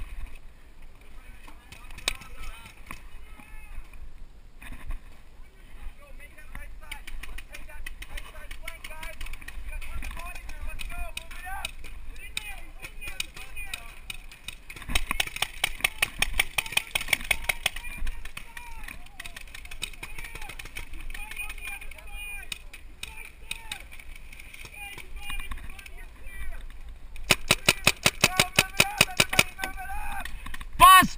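Electronic paintball marker, a Planet Eclipse Etek2, firing rapid strings of shots several times a second: one burst in the middle and a louder, longer one near the end. Distant shouting between.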